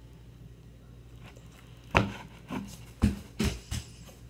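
Room tone, then about five sharp knocks and slaps from hands handling things at close range, starting about halfway through; the first is the loudest.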